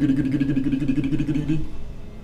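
A low, steady pulsing drone held at one pitch, which cuts off shortly before the end.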